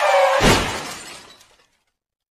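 A sudden, loud shattering crash that dies away over about a second and a half, with a deeper thud about half a second in.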